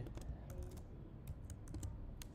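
Computer keyboard being typed on: about a dozen quick, irregular keystroke clicks as a short piece of code is entered.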